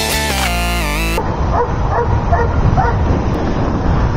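A music track cuts off about a second in. It gives way to steady wind and riding noise with a run of short, high yips, like a small dog barking several times.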